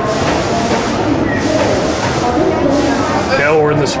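Voices and crowd chatter in a large, busy exhibition hall, with a steady background hubbub; a closer man's voice comes in near the end.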